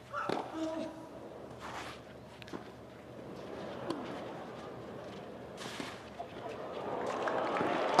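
Tennis ball struck by racquets in a rally on a clay court: a few sharp pops a couple of seconds apart. A low crowd murmur swells near the end as the point builds.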